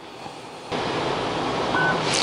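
Flashforge Adventurer 5M Pro 3D printer running its automatic bed-levelling calibration: a steady whirring of its fans and motors that starts abruptly less than a second in, with a short steady whine from the motion near the end.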